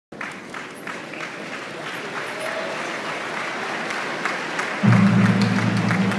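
Large seated crowd applauding in a big hall, the clapping swelling steadily. About five seconds in, a loud low steady tone comes in under the applause.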